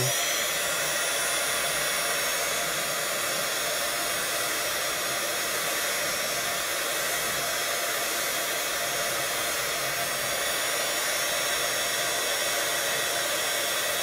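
Handheld craft heat tool (an embossing-style heat gun) running steadily, its fan blowing hot air onto heat-shrink tubing to shrink it around a shoelace end.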